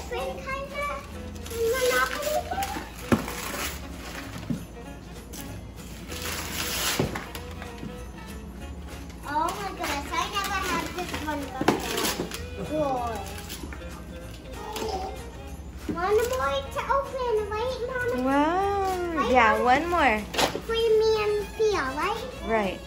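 Wrapping paper torn and rustled off a boxed present in short bursts, with young children's high voices babbling and exclaiming in the second half.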